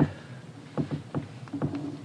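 A quiet pause of room tone with a few soft, brief clicks and taps scattered through it: small handling noises.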